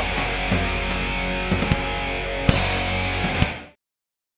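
Live rock band with distorted electric guitar sounding loud and sustained, with a few sharp hits, the loudest about two and a half seconds in. The sound then fades quickly to silence shortly before the end.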